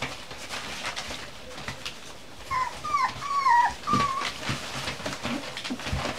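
Cocker spaniel puppies whimpering: four short, high whines about halfway through, some dropping in pitch at the end. Rustling newspaper under the puppies' feet as they scuffle.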